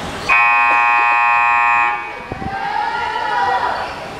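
Sports-hall scoreboard buzzer sounding one steady, loud blast of about a second and a half, which cuts off abruptly. Girls' voices calling out follow.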